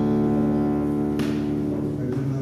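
Live duo of classical guitar and double bass holding a long, steady chord, which breaks off with a short sharp sound just over a second in while lower notes keep sounding.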